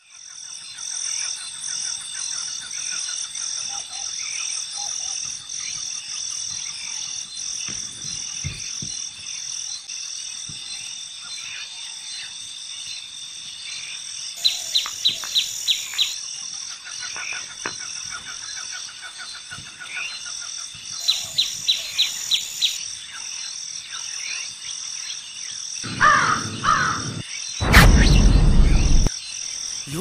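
Outdoor nature ambience: a steady, pulsing chorus of insects with birds calling. Twice there is a quick run of about eight sharp chirps, and near the end a loud burst of noise lasts about a second.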